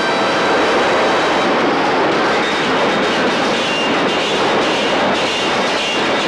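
Underground train running fast past a platform: a steady, loud rushing noise.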